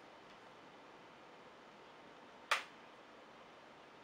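Quiet room tone broken about two and a half seconds in by a single sharp click as the small plastic head piece of a figure is handled and freed from its wrapping.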